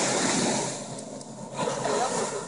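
Surf washing on the beach, a steady rush that is loudest for the first half second and then eases and wavers.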